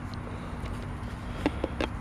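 Steady low outdoor background hum, with a few light clicks in the second half as the jump starter's engine start port and cable plug are handled.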